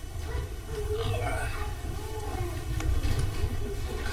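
Low steady rumble of room noise with faint, distant murmured talk and the shuffle of people sitting back down in their chairs.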